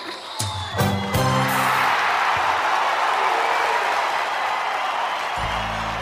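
Backing music stops about a second and a half in, and an audience applauds and cheers for about four seconds; a low music note comes back in near the end.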